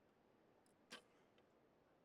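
Near silence broken about a second in by a single sharp click: a recurve bow's string being released as the arrow is shot.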